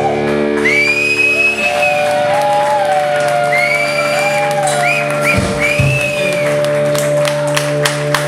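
A live rock band with electric guitars, bass and drums letting the song's last chord ring out: held notes with a steady tone and gliding, arching high notes over them, and scattered clapping starting near the end.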